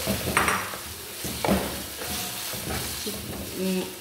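Chicken pieces and ginger paste sizzling in hot oil in a non-stick wok while a wooden spoon stirs them. The spoon scrapes across the pan a couple of times.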